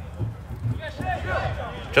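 Faint voices over a steady low hum, with a louder man's voice starting right at the end.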